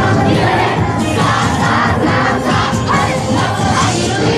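A large dance team shouting rhythmic calls in unison, about two a second, over loud festival dance music.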